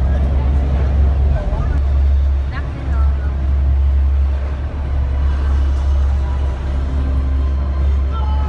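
Steady low drone of a SuperDong passenger ferry's engines, heard from inside the enclosed passenger cabin, with scattered passenger voices over it.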